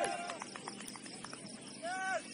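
Field sound of a five-a-side or small-sided football match: a player's shout trails off at the start, a quick run of light knocks follows, and another short shout comes near the end.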